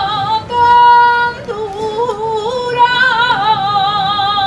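A solo high voice singing a slow, ornamented melody with strong vibrato, holding one steady note for about a second near the start before the wavering line resumes.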